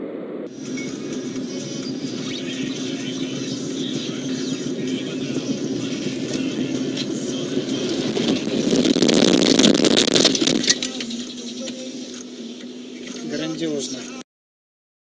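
A car driving, heard from inside through a dashcam: steady road and engine noise that swells into a loud rushing scrape from about nine seconds in, then a sharp knock just before eleven seconds, as the car runs off the road onto rough, brushy ground.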